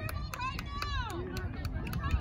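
Distant shouted calls from players and spectators at a soccer game, high-pitched voices rising and falling, with no clear words, over a low rumble.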